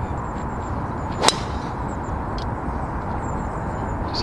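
A driver striking a golf ball off the tee: one sharp crack about a second in.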